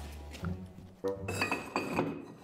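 Ceramic jugs clinking against each other and the shelf as they are handled and set back on a wall shelf, a few clinks in the second half, over background music.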